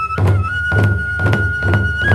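Hoin kagura accompaniment: two barrel taiko drums beating a steady, quick rhythm under a bamboo flute holding one high note, which steps up slightly about half a second in.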